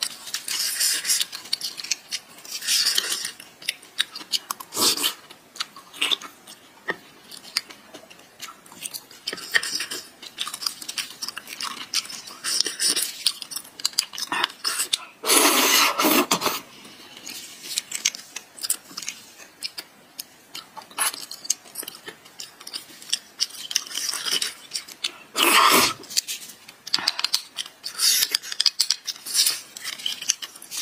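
Close-up chewing and wet mouth sounds of a person eating beef bone marrow, with many short smacks and clicks. About halfway through comes a longer, louder slurp as marrow is sucked from a cut bone section, and a second loud burst follows about ten seconds later.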